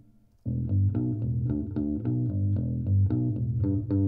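Solo electric bass track played back, a steady run of picked notes starting about half a second in, each note with a loud, clicky pick attack. The bass is played with a pick right over the pickup and has no EQ yet to tame the click.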